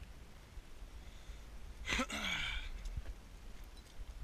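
A person lets out one short, breathy sigh about halfway through, the voice falling in pitch as the breath runs out.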